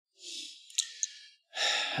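A man's soft sigh, a breathy exhale with two small mouth clicks, followed by a quick breath in just before he speaks.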